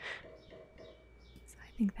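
A woman's soft whispered voice trailing off, then a pause holding only a faint low hum and a thin steady tone, before the whispering resumes near the end.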